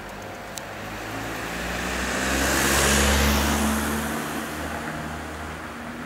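A car passing by on the street: its engine and tyre noise grow louder to a peak about halfway through, then fade away.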